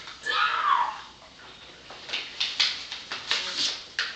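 A short high voice with falling pitch at the start, then a run of crisp, irregular rustles and tears as a paper envelope is torn open and its contents pulled out.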